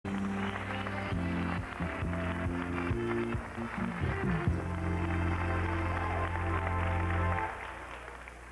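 Opening theme music for a TV quiz show, with a few quick phrases and then a long held chord that cuts off about seven and a half seconds in.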